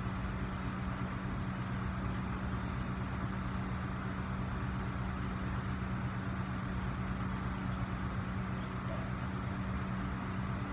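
Steady low machine hum with a constant drone, unchanging throughout.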